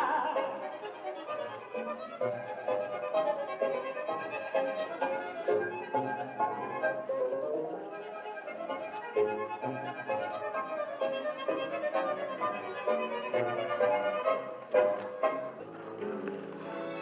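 Tango music led by bandoneon, with a pulsing bass marking the beat; the singer's last word ends about half a second in and the rest is instrumental.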